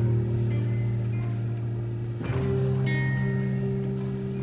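Music with guitar: held chords that change a little past halfway.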